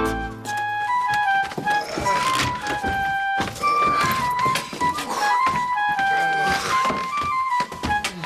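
Wooden recorder playing a simple melody of short held notes, with sharp knocks scattered throughout.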